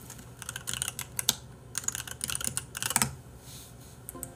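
Typing on a computer keyboard to enter a search: a quick flurry of key clicks that stops about three seconds in.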